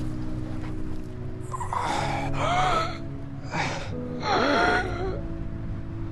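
A man gasping loudly twice, each a drawn-out, strained breath with a wavering pitch, over background music with steady held notes.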